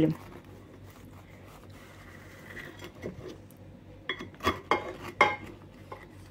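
Knife cutting a cake in its baking dish: quiet at first, then several sharp clicks and knocks of the blade against the dish about four to five seconds in.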